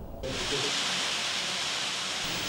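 A steady, even hiss of noise that starts abruptly a moment in and holds level throughout.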